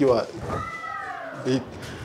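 A cat meowing once: a single drawn-out, high-pitched call that rises and then falls, starting about half a second in, between snatches of talk.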